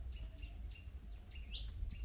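Birds chirping faintly with several short, high notes, over a low steady rumble.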